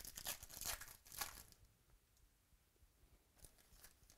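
A foil trading-card pack being torn open, crackly tearing and crinkling of the wrapper that stops about a second and a half in. A few faint rustles follow near the end.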